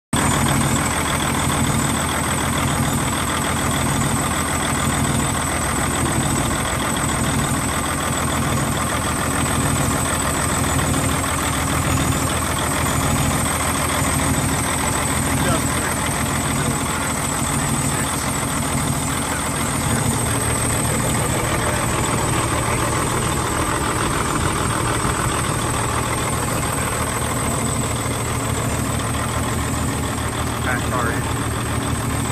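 Paccar MX13 inline-six diesel in an emissions-deleted Peterbilt 386, idling steadily close to the open engine bay. The tone shifts slightly about twenty seconds in.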